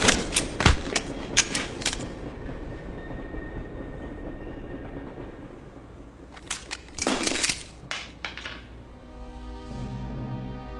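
Movie fight sound effects from a hand-to-hand struggle over a pistol: a quick flurry of sharp hits and grabs in the first two seconds, then a quieter stretch with a low rumble, then another short burst of sharp impacts about seven seconds in. Music with sustained notes comes in near the end.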